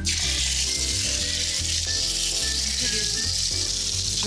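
Whole piece of beef tenderloin searing in hot oil in a frying pan, a loud steady sizzle that starts suddenly as the meat goes into the pan.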